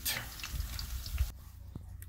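Saltfish fritters sizzling and crackling in hot oil in a cast-iron skillet; the sizzle breaks off abruptly after a little over a second.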